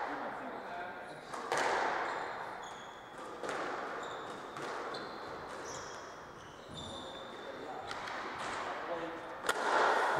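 Squash rally: the ball cracks off rackets and walls every second or two, each hit ringing in the hall, with shoes squeaking on the wooden court floor between shots.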